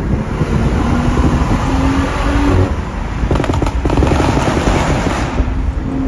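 BMW 440i's turbocharged inline-six accelerating hard at highway speed, its pitch climbing in steps, under heavy wind and road noise. About three and a half seconds in there is a short burst of sharp crackles.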